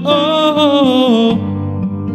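A male voice holds a sung note with vibrato that slides down and ends about a second and a half in, over an instrumental backing track. The backing then carries on alone.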